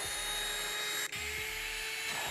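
Gtech cordless handheld vacuum cleaner running with a steady high motor whine, cut off briefly about a second in.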